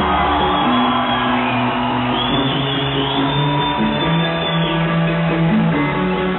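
Live rock band playing through a stage PA, led by electric guitars over bass.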